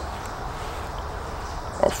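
Steady low background hiss and rumble of outdoor ambience, with no distinct clicks; a man's voice starts near the end.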